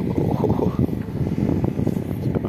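Wind buffeting the microphone: a steady low rumble that flutters unevenly.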